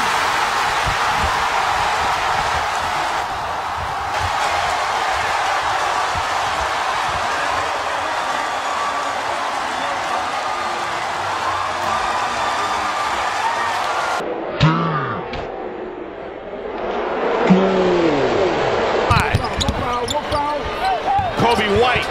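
A large crowd cheering steadily for about fourteen seconds. After an abrupt change, basketball arena sound follows: a basketball being dribbled on a hardwood court, with sharp bounces in the last few seconds.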